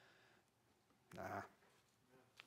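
Near silence, broken about a second in by a man's single short, low spoken "nah".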